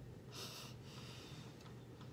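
A single short breath through the nose, a brief hiss about half a second in, over a faint steady low hum.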